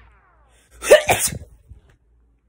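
A woman sneezing once, about a second in.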